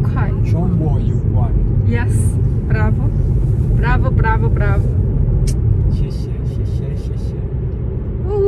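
Steady road and engine rumble inside a moving car's cabin. Over it, a man's voice chants short singsong syllables during the first five seconds.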